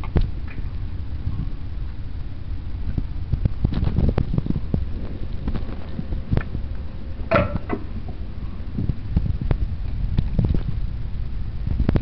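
Glass spice jars being shifted and knocked against each other on a cabinet shelf by a rummaging hand: irregular clicks and clunks, over a low rumble.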